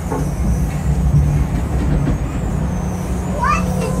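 Amusement-ride car running along its steel track: a steady low rumble.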